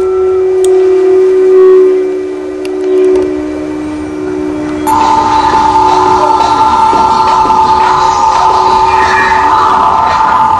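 Electronic drone music made of long held tones. A low drone steps down in pitch and fades, then about halfway through a louder, higher horn-like tone comes in suddenly over a hissing, crackling texture and holds.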